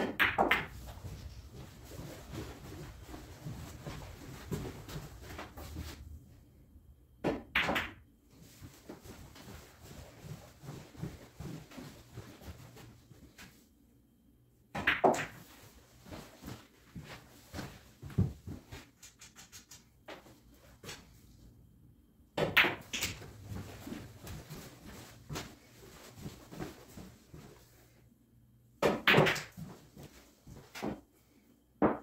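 A run of pool shots about every seven seconds, five in all: sharp clacks of the cue tip on the cue ball and of ball striking ball, with balls knocking into the pockets of the table. Fainter clicks and knocks fall between the shots.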